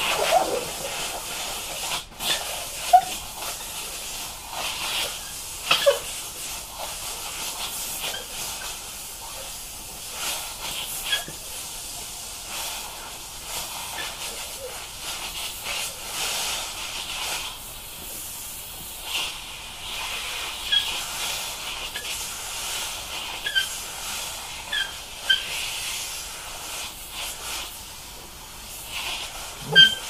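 Handheld steamer wand hissing steadily as it blows steam onto an upholstered boat headrest cover to warm it and work out wrinkles, with a few short sharp pops and spits along the way.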